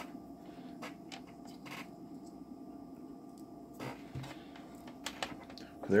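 Test leads being handled and a metal alligator clip being attached to a bare wire end: faint rustling and a few light clicks over a low steady hum.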